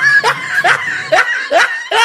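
A person snickering: a quick run of short laughs, about four a second, each rising in pitch.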